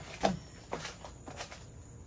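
A sharp knock about a quarter second in, followed by a few fainter knocks and handling noises.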